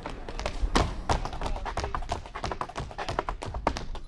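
Tap dancing: metal-plated tap shoes striking wooden boards in a fast, irregular run of sharp taps, with a few heavier strokes about a second in.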